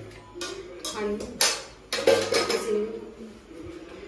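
Voices and music in the background, with a few sharp clinks of a steel ladle against a steel cooking pot as food is served.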